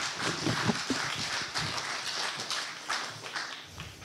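Audience applause, many hands clapping at once, dying away toward the end.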